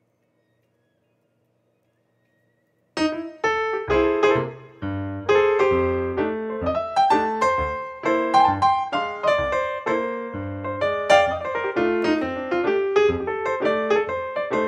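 Background solo piano music, starting abruptly about three seconds in after near silence and then playing continuously with many quick notes.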